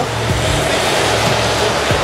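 Steady road and engine noise heard inside a moving car's cabin: an even rush with a low hum beneath it.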